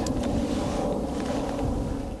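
Wind blowing across the microphone: a steady noise, heaviest in the low end, with a faint steady hum underneath.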